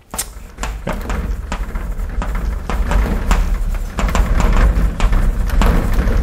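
Chalk writing on a blackboard: a quick, irregular run of sharp taps as the chalk strikes the board, with scratchy scraping between the strokes and a dull knock from the board itself.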